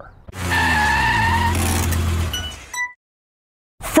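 A car engine running at steady revs for about two seconds, its pitch sinking slightly, with a high whine above it. It fades with a few short high beeps and cuts off into silence about three seconds in.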